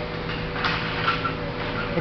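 Steady background hiss with a faint constant hum; no distinct clicks or knocks stand out.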